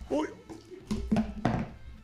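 A man's short exclamation, then a few dull thunks as a small plastic pet dish thrown to him is caught and knocked down onto the desk.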